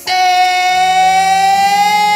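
A male singer belting one long, high sustained note that rises very slightly in pitch, with quieter accompaniment beneath it.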